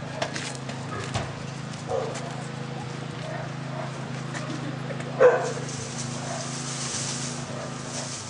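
Footsteps over a doorstep as people walk into a house through a wooden front door, against a steady low hum. A single loud, short sound comes about five seconds in.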